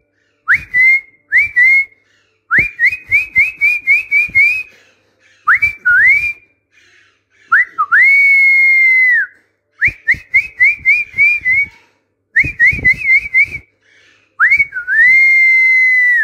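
Repeated whistling, around one high pitch: runs of four to six quick upward-swooping whistles, broken by a couple of longer notes that swoop up, hold level for about a second and a half, and drop away at the end.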